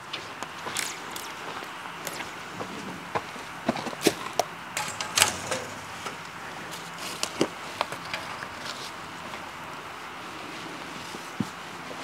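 Light metallic clicks and clinks, scattered and irregular, as steel coil-spring electric fence gates are stretched across an opening and hooked up, with footsteps on soft dirt, over a steady outdoor hiss.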